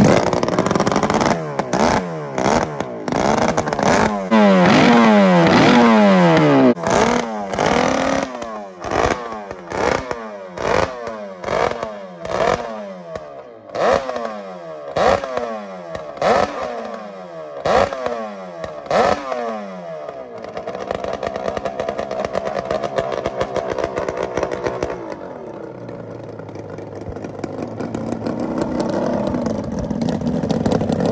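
Home-built Kawasaki S1 550 two-stroke four-cylinder engine, on open carburettors and open header pipes, running loud on a test run. It starts suddenly and is held at high revs for several seconds, then blipped hard about once a second, each rev falling away, before settling to a lower, uneven idle about two-thirds of the way in that picks up again near the end.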